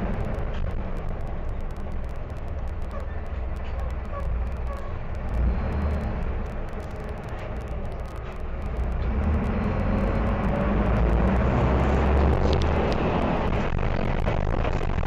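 Mercedes-Benz OM-904LA diesel engine of a city bus running under way, quieter for a few seconds, then louder and rising in pitch from about nine seconds in as the bus accelerates.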